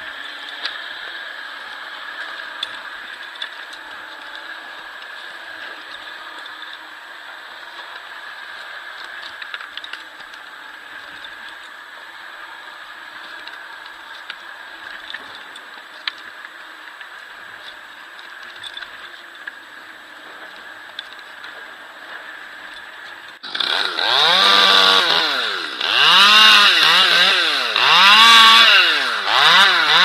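A quiet steady drone with small knocks, then about 23 seconds in a Stihl MS 200T top-handle chainsaw starts up loud and is revved up and down again and again, its pitch rising and falling every second or two.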